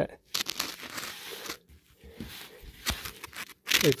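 Irregular rustling, scraping and crackling handling noise with a few sharp clicks, loudest in the first second and a half, as a hand and phone move about under an ATV.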